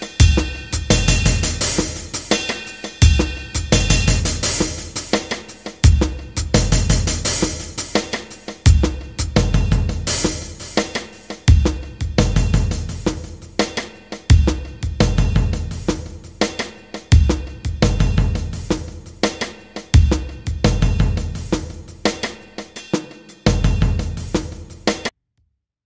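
A music backing track built on a drum beat: busy hi-hat and cymbal work over snare and bass drum, with a heavy low hit about every three seconds.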